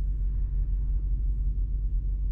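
Low, steady rumble of the Lexus GX470's 4.7-litre 2UZ-FE V8 idling, heard from inside the cabin.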